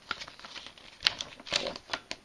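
A glossy paper leaflet being handled and unfolded: light rustling and scattered clicks, with one sharper crackle about a second in.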